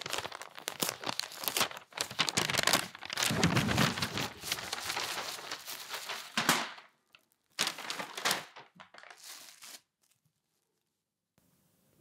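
Tissue paper crinkling and rustling as a garment is unwrapped from it by hand, in dense crackly spells with pauses, stopping about ten seconds in.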